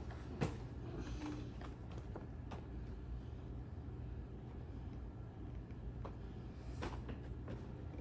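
Cardboard Funko Pop boxes being handled and stacked: a few light knocks and taps, the sharpest about half a second in, over a steady low room hum.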